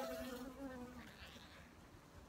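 Honeybee buzzing close by, a steady drone that fades out about a second in.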